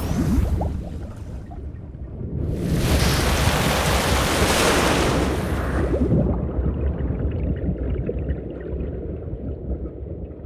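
Cartoon sound effect of water flooding into an undersea base: a deep rumble all through, with a loud rush of water from about two and a half seconds in to about six seconds, then settling to a lower bubbling underwater rumble.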